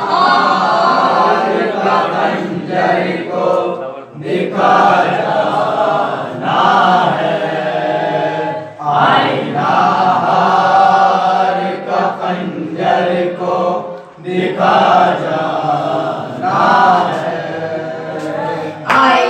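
Boys' voices chanting a noha, a Shia mourning lament, in long sung phrases with short breaks about every four to five seconds.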